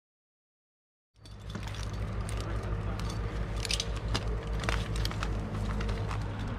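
After about a second of silence, a tree climber's harness gear clinks and jangles, with scattered sharp clicks, over a steady low rumble.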